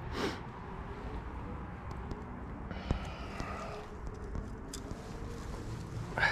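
Faint rustling and small clicks as hands work a fish free in the mesh of a landing net, over a steady low rumble.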